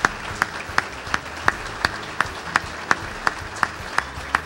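An audience clapping in unison, a steady rhythm of about three claps a second, over a wash of looser applause.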